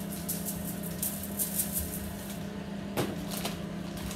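A plastic shaker bottle of dry BBQ rub being shaken over ribs on foil: a quick run of light rattles, about three or four a second, that stops a little past two seconds in. A single knock comes about three seconds in. A steady low hum runs underneath.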